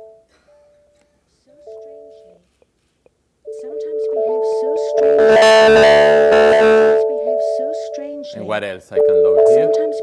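A music clip played back through the hall's speakers. After a few near-silent seconds, a melody of sustained, smooth electronic tones starts, gliding between notes. It grows into a louder, fuller passage in the middle, with a wavering sung voice near the end.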